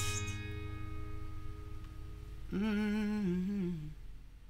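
Final chord of a capoed steel-string acoustic guitar ringing out and fading. About two and a half seconds in, a man hums one long closing note that wavers and falls slightly before stopping.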